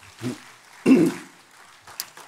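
A man clearing his throat into a close microphone: a small sound near the start, then one louder, short clearing about a second in.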